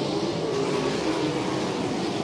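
A pack of wingless USAC sprint cars racing on a dirt oval: several V8 engines running at once, their pitches rising and falling as the cars work through the turn.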